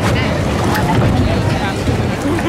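Outdoor crowd chatter with low rumbling wind noise on the microphone and water moving in the ride's boat channel, all steady.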